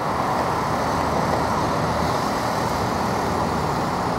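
Steady motor vehicle and road traffic noise, an even rumble that holds level without change.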